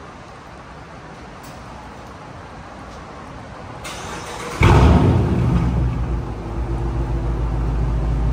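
Dodge Charger R/T's 5.7-litre Hemi V8 remote-started in a concrete parking garage. A short crank about four seconds in gives way to a loud catch and flare, then the engine settles into a steady idle.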